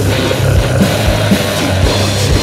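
Doom death metal played by a full band: heavily distorted, down-tuned guitars and bass over a drumbeat with low kick-drum hits about every half second.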